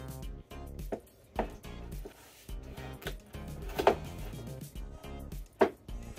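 Background music, with four sharp knocks of a spatula against a mixing bowl while cookie dough is stirred; the loudest two come about four seconds in and near the end.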